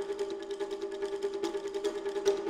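Background music: a steady held drone note under rapid, even ticking percussion.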